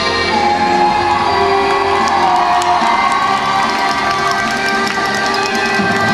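Program music playing over the arena loudspeakers while the crowd cheers and whoops, the cheering swelling from about one and a half seconds in and easing off near the end.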